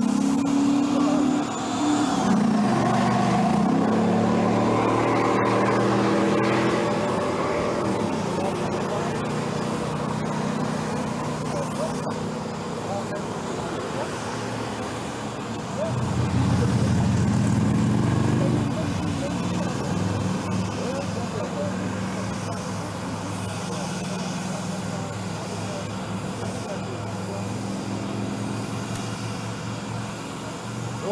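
Motorcade of vans and SUVs driving past, engines running and tyres on tarmac. It is loudest as vehicles pass a few seconds in and again about sixteen seconds in.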